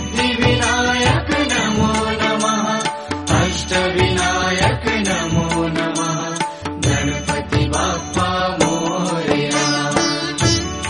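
Indian devotional mantra music for Ganesh, with a steady beat and layered instruments running on between the chanted lines.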